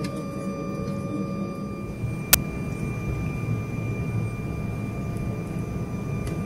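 Embraer E190 jet cabin noise on the ground at the start of taxi: a steady low hum from the engines and air conditioning with a faint steady whine over it, and one sharp click a little over two seconds in.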